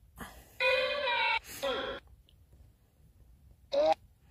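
A voice: one long, held high-pitched call about half a second in, then a short falling syllable, and a brief call near the end.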